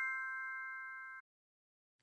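The fading tail of a bell-like chime: several steady ringing tones dying away, cut off abruptly about a second in, followed by silence.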